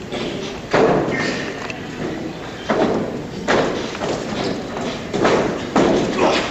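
Heavy thumps of wrestlers hitting and landing on a wrestling ring's mat, about five at uneven intervals, each with a short ring of reverberation.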